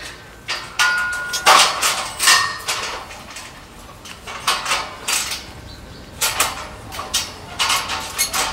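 Steel scaffold frames and tubes clanking and knocking together as they are handled and fitted. It is a series of irregular metallic clangs, one ringing briefly about a second in.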